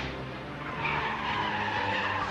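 Car tyres squealing on asphalt as a car skids through a sharp turn, starting about a second in, with background music underneath.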